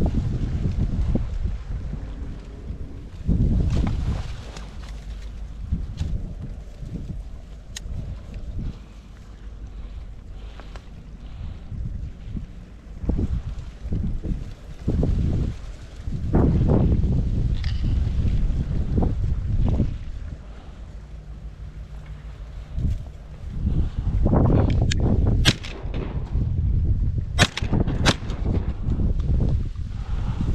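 Wind gusting over the microphone in uneven low rumbles, rising and falling over the whole stretch, with a few short sharp clicks near the end.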